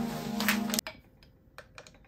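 Background music that cuts off suddenly a little under a second in, followed by a few faint, sharp clicks and taps of a power cable being handled and fitted into the back of a computer.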